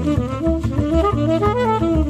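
Jazz saxophone playing a run of notes that climbs in pitch, over a pizzicato double bass.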